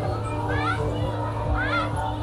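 Children's voices calling out in two rising shouts, about half a second and a second and a half in, over background music and a steady low hum.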